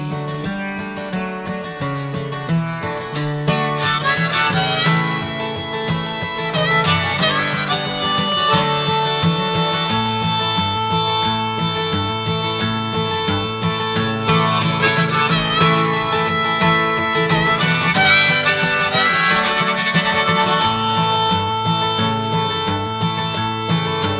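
Harmonica solo played over acoustic guitar, in an instrumental break with no singing.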